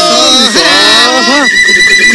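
Several voices wail or chant at once in wavering, overlapping pitches. About halfway through, a steady high held note comes in.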